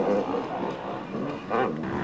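Enduro motorcycle engine revving as the bike rides the dirt track, its note rising and falling with the throttle.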